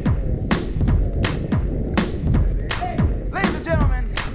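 Horse cantering on grass: even hoofbeats about one stride every 0.7 s, each a sharp knock with a low thud, with a steady low rumble of wind on the microphone.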